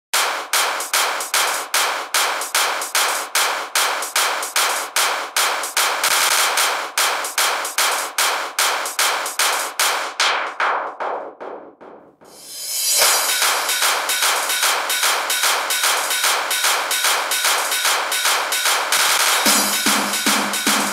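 Hardcore electronic track intro: a drum pattern of rapid, evenly spaced hits, about four a second, fades out around ten to twelve seconds in. A new, busier drum pattern then comes back in, and a bass line enters just before the end.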